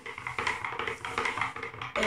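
Quick, irregular scraping and knocking of a makeshift stirrer, a plastic shoe horn joined to a fork, working through paint in a container.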